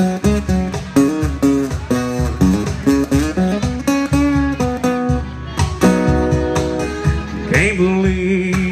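Live acoustic guitars playing an instrumental break: a run of picked single notes moving up and down over strummed chords.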